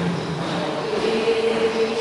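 Group of voices chanting or singing in unison, with long held notes.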